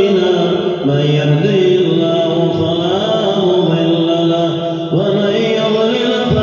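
A man chanting Arabic in a slow, melodic recitation, holding long notes that glide between pitches, amplified through a handheld microphone: the chanted opening invocation of the Friday sermon.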